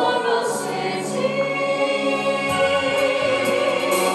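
A stage musical's ensemble singing in chorus over instrumental accompaniment, with long held notes.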